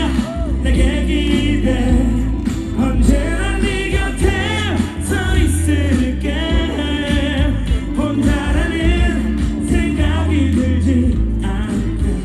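Male K-pop vocalist singing live into a handheld microphone over a backing track, heard through concert loudspeakers with a heavy bass line.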